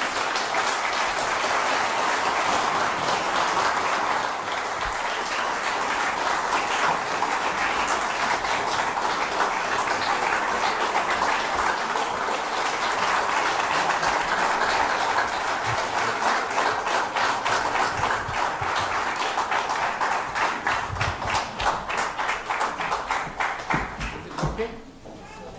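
Audience in a hall applauding steadily for a long stretch, the clapping falling into an even rhythmic beat in the last several seconds.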